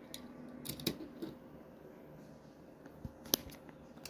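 Quiet handling of small die-cast toy cars: a few light clicks and taps as they are moved and set down, with one sharper click a little past three seconds in.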